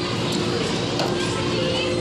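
Background chatter and voices of children playing, over a steady hum.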